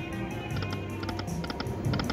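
Lightning Link Best Bet slot machine spinning its reels: electronic game tones with clusters of short clicks as the reels run and stop.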